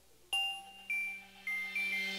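Intro jingle from a video title animation: four bell-like chime notes struck about a third of a second in and then at half-second spacing, each ringing on and fading.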